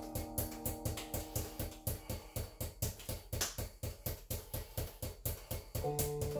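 Five juggling balls bouncing hard off the floor in a fast even rhythm, about four bounces a second, during a continuous force-bounce juggling pattern. Classical guitar music plays underneath, fading in the middle and coming back louder near the end.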